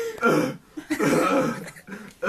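A man laughing and coughing hard, two rough throat-clearing coughs, the second longer.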